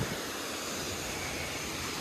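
Steady rushing of a mountain waterfall and stream, an even hiss.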